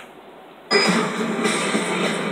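Movie trailer soundtrack played from a TV in a small room: a brief quiet, then music and effects cutting in abruptly under a second in and carrying on loud.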